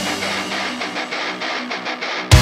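Heavy rock background music in a break: an electric guitar strumming alone without the bass and drums, the strums coming faster toward the end.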